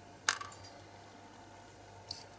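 A single sharp metallic click about a third of a second in, with a brief ringing tail: a thin steel axle rod knocking against a small diecast metal tractor body as it is fitted.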